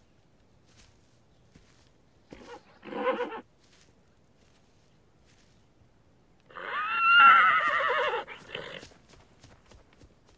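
A horse whinnies once, loud and wavering, for nearly two seconds from about six and a half seconds in. It follows a shorter call about two and a half seconds in, and a few light knocks come after it.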